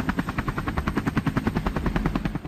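Helicopter rotor chopping in fast, even beats, about a dozen a second.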